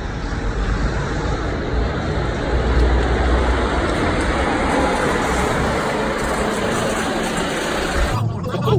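Road vehicle noise: a steady low rumble under a broad hiss, building slightly over the first few seconds and then holding.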